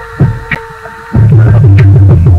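Hip-hop beat with no vocals: a held synth tone over a few sparse drum hits, then a little over a second in a deep pulsing bass and full drum pattern drop in loud.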